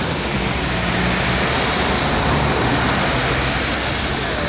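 Steady city street traffic noise with the low, even hum of a nearby vehicle engine running.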